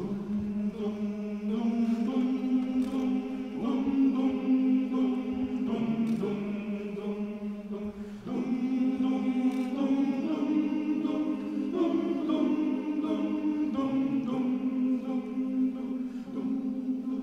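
Male choir singing slow, held chords, with short breaks between phrases about six and eight seconds in.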